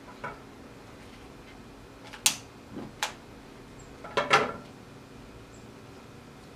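A few sharp clicks and clinks, four in all, the last two close together about four seconds in, from a glass beer bottle being handled while the string wrapped around it is set alight.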